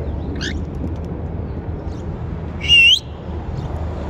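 Pet parrot calling: a short high chirp near the start, then about two and a half seconds in a loud, half-second whistled call with a wavering pitch.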